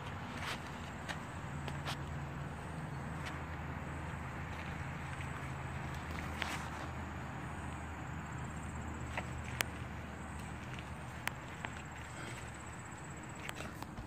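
Footsteps and scattered clicks from a handheld phone as someone walks alongside a boat hull, over a steady low background hum.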